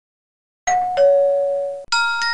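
A two-note 'ding-dong' chime: a higher note begins about two-thirds of a second in, then a lower note rings and fades. It is an intro sound effect played over the logo. Right at the end, bright glockenspiel-like music begins.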